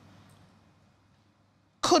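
A pause in a woman's speech: a faint hum fades to near silence, then near the end a short, sharp vocal sound as she starts speaking again.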